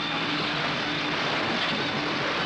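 Steady engine noise with a loud continuous hiss, holding even throughout.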